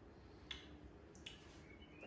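Near silence: kitchen room tone with a faint steady low hum and two small clicks, about half a second and a second and a quarter in, from handling the can and glass.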